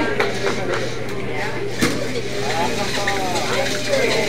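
Indistinct talk among people in a hall over a steady low hum, with a single sharp knock a little under two seconds in.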